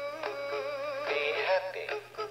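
Big Mouth Billy Bass animatronic fish toy singing a song through its small built-in speaker, the voice wavering in pitch.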